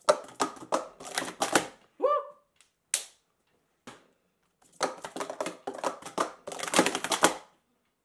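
Plastic sport-stacking cups clattering in rapid runs of clicks as stacks are built up and brought down. There are two bursts of about two seconds each, with a few single clicks between them.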